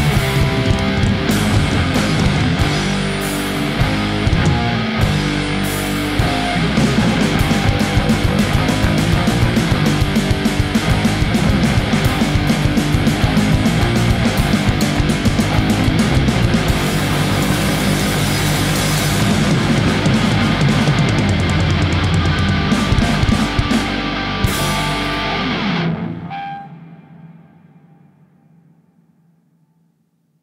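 Thrash metal punk band playing live: electric guitars, bass and fast drums at full volume. About 26 seconds in the song stops on a last hit that rings out and fades away to near silence.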